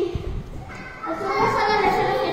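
Children's voices talking, starting a little under a second in.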